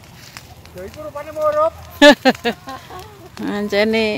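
People's voices talking and calling out, loudest in a sharp outburst about two seconds in and a longer held call near the end.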